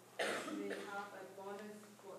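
A person clears their throat once, a short rough burst about a quarter-second in, with faint distant speech around it.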